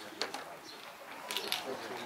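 Two quick pairs of sharp clicks, about a second apart, over a faint murmur of voices.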